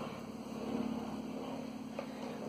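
Faint, steady low background rumble with no clear distinct events.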